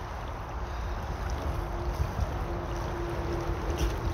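Shallow river water rushing and lapping around people sitting in it, with wind buffeting the microphone in a low, gusty rumble.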